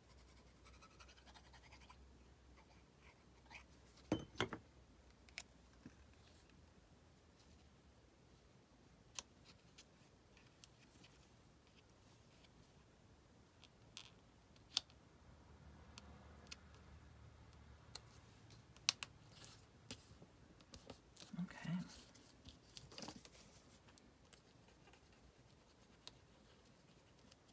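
Near silence with scattered faint clicks, taps and paper rustles as small paper pieces and a plastic glue bottle are handled on a craft table; the sharpest taps come about four seconds in and again near nineteen seconds.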